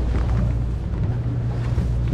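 Boat engine running steadily with a constant low hum.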